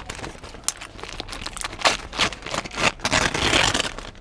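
Paper takeaway bag crinkling and rustling as it is opened and the paper wrapped around a burger is pulled back, with quick irregular crackles that are densest near the end.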